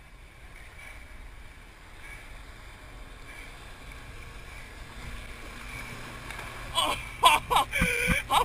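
Motorboat engine and rushing water heard from across a lake, steady and low, growing slightly as the boat tows a barefoot water skier closer. About seven seconds in, a rapid series of loud, short sounds with swooping pitch starts.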